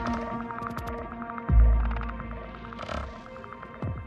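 Ambient relaxation music: sustained droning tones with a pulsing, throbbing shimmer. A deep low boom sounds about a second and a half in and fades slowly, with a softer low thump near the end.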